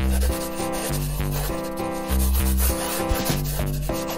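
A black marker tip rubbing across paper as it draws lines, heard under background music with a bass line.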